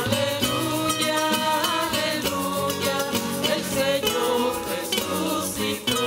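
Church hymn played on strummed guitar with singing, a steady strummed rhythm throughout.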